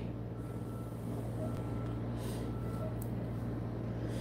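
A steady low hum, with a faint thin whistle that comes and goes three times as a disposable vape is drawn on.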